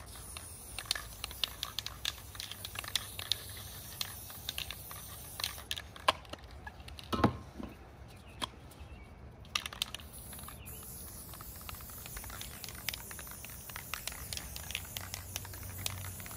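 Aerosol spray-paint cans spraying paint in short bursts, a thin hiss with brief gaps. Scattered clicks and knocks run through it, with one stronger knock about seven seconds in.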